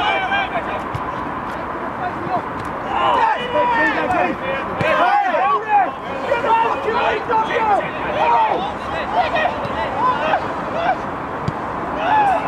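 Footballers shouting short calls to one another during play, over steady background noise.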